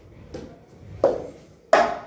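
Cup-rhythm strokes: hand claps and a cup knocked on a wooden school desk, three beats about two-thirds of a second apart, the last the loudest.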